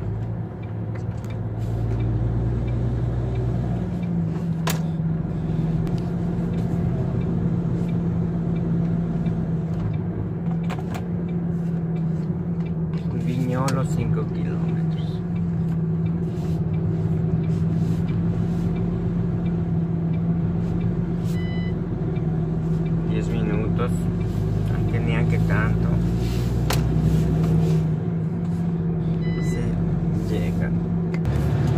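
Truck engine running steadily, heard from inside the cab while driving, its pitch stepping up about four seconds in as it picks up speed.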